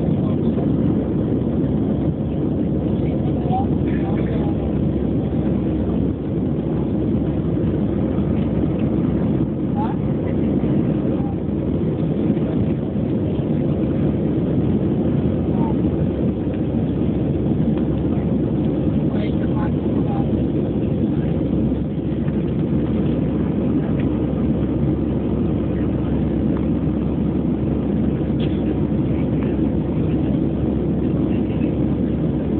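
Steady roar of an Airbus A320-family airliner's jet engines at climb power, heard from inside the passenger cabin.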